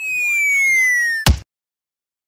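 Cartoon-style comedy sound effect: a whistle tone sliding steadily down for about a second and a quarter, cut off by a short thump.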